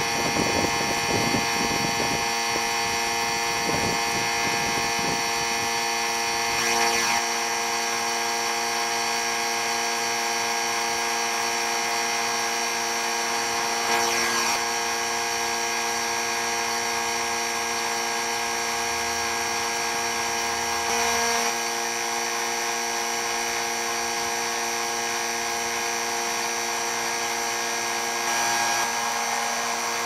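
Small electric vacuum pump running steadily, its motor holding a constant hum and whine as it draws warm motor oil up into the extraction chamber. The sound swells briefly about every seven seconds.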